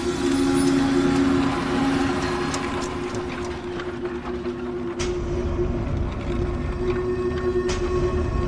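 A steady, low droning tone from the soundtrack over street noise; about five seconds in, after a sharp click, the deep rumble of a car engine comes in beneath it.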